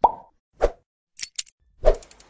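Intro-animation sound effects: a series of short, sharp pops, the first with a brief tone, and a couple of thin high clicks between them.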